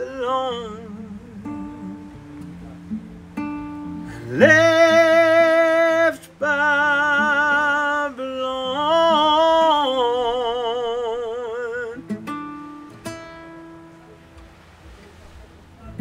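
Male voice singing long, held notes with vibrato over an acoustic guitar. The singing stops about twelve seconds in, and the guitar goes on more quietly.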